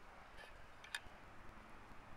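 Near silence: a faint background hiss, with one short click about a second in.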